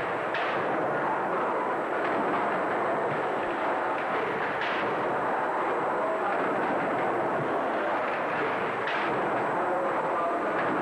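Victorian steam beam pumping engines running: a steady mechanical noise with a slightly stronger beat about every four seconds.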